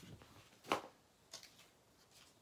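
Paper sheets being handled and slid across a craft table: a short, sharp paper rustle just under a second in, then a fainter one about half a second later.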